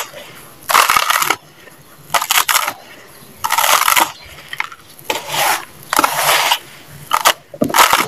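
Hands digging into and pressing dry sand: about seven separate gritty, crunchy swishes, each under a second long, with short pauses between them.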